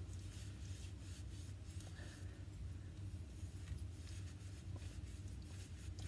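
Faint rustling and rubbing of a tissue, lightly sprayed with WD-40, being worked over a brass cartridge case to wipe off rust and grime, in short irregular strokes over a low steady hum.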